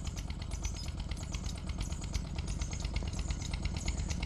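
An engine running steadily nearby, a rapid, even chugging beat over a low rumble.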